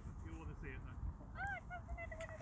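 Geese honking faintly: one drawn-out honk about one and a half seconds in, then a quick run of shorter honks.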